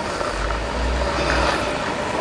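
A heavy road vehicle passing on a nearby street, its low engine rumble swelling a moment in and fading about halfway through, over steady traffic background.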